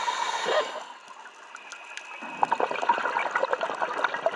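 Scuba diver breathing underwater through an open-circuit regulator. There is a hiss of inhalation in the first second, then a quieter pause, then a stream of exhaled bubbles gurgling and popping from a little past halfway.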